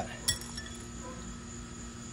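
A single sharp clink with a short ring about a quarter second in, then a few faint ticks, as a small bulb and its socket are handled against a motorcycle's plastic light housing.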